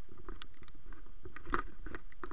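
A swollen, fast-flowing river rushing steadily, with irregular clicks and knocks over it, the strongest about one and a half seconds in.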